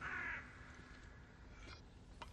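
A crow cawing: one harsh caw at the start and a fainter call near the end.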